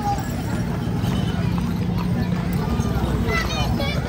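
Horses' hooves clip-clopping on a paved road as decorated horses and a horse-drawn carriage walk past, over the chatter of voices.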